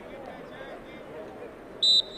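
A short, sharp referee's whistle blast near the end, signalling the corner kick to be taken, over faint distant voices.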